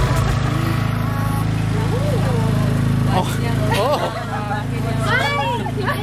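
A steady low engine hum, with people's voices over it now and then.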